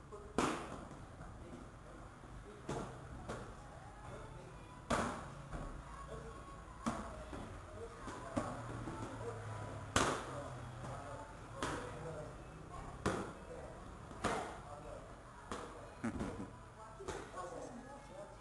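Muay Thai kicks and knee strikes landing on strike pads held by an instructor: sharp smacks about every one to two seconds, the hardest one about ten seconds in, over background voices.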